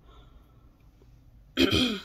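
A woman clears her throat once near the end, a short harsh rasp lasting about half a second.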